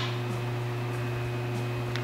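Faceting machine's motor running steadily with a low hum and a faint higher whine, its polishing lap turning at about 300 RPM. A short click right at the start.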